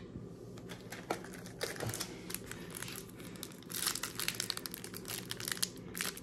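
Foil wrapper of a Prizm football trading-card pack crinkling in short crackly bursts as it is handled and torn open.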